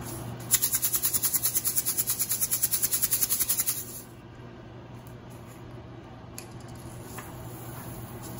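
Plastic bottle of Epsom salt crystals being shaken hard, the crystals rattling inside at about eight shakes a second for some three seconds, to loosen salt that has caked into a clump.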